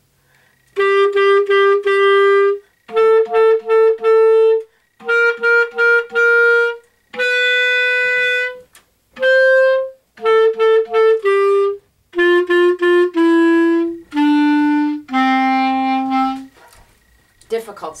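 Clarinet playing a short beginner exercise melody in triplet rhythm: groups of three quick notes each followed by a longer note, in phrases split by brief breath pauses. The last notes step downward to a lower held note.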